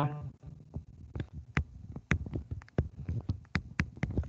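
Light, irregular clicks and taps from writing on a digital whiteboard with a pen or mouse, about a dozen in a few seconds, over a faint low hum.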